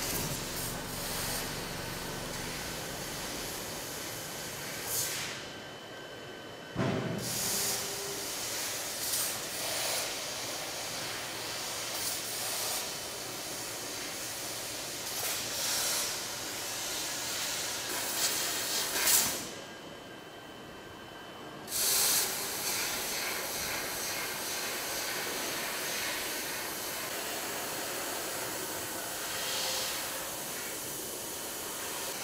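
A 1 kW fiber laser cutting machine cutting sheet steel: the cutting head's gas jet gives a steady hiss. The hiss stops twice, for about two seconds each, a little after five seconds in and again just before twenty, then starts again as cutting resumes.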